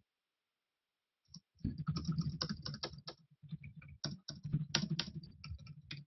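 Typing on a computer keyboard: rapid, irregular key clicks that start about a second and a half in and keep going.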